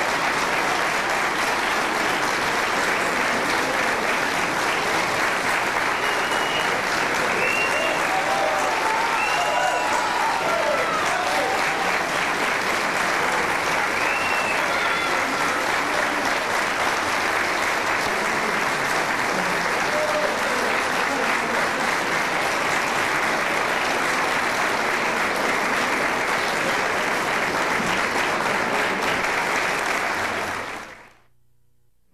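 Audience giving a standing ovation: dense, steady clapping throughout, with a few voices calling out from the crowd partway through.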